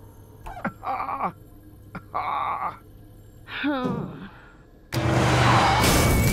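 An animated character groaning wearily, four short moans with sliding pitch. About five seconds in, a sudden loud burst of noise cuts in.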